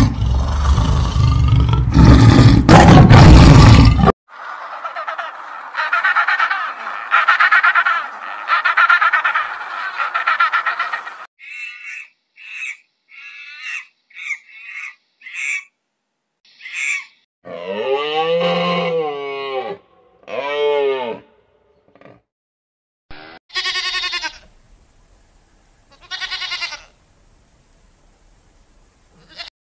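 Tiger giving deep, loud grunting roars for the first four seconds, followed by a series of other animal calls: a long pulsing call, a run of short high chirps, and several longer arching cries.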